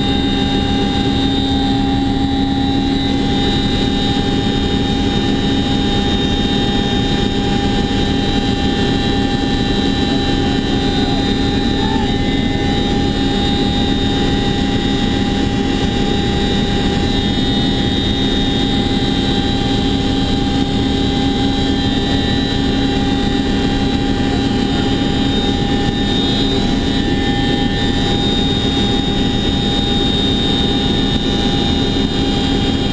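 Boeing CH-47 Chinook heard from inside its cabin in flight: a loud, steady drone of the twin turbine engines and rotors with constant high whining tones over a rush of air through the open rear ramp.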